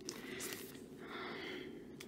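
Faint rustle of a photocard being slid out of its clear plastic sleeve, with a few soft clicks and a brief soft swish about a second in.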